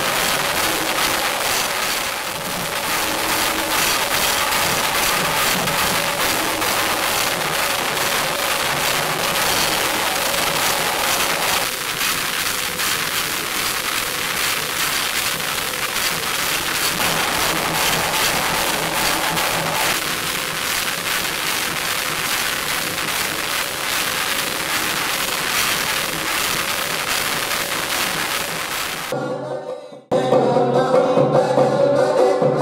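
Drum ensemble playing dense, continuous percussion, a rapid clatter of strokes with no let-up, cutting off abruptly about a second before the end.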